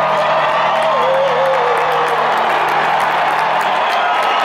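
Live band with a cheering, whooping arena crowd: a male singer holds one long note that slides slowly down, over a sustained band chord that stops near the end.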